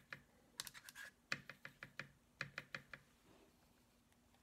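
A faint run of quick light clicks and taps, about fifteen of them, starting about half a second in and stopping about three seconds in.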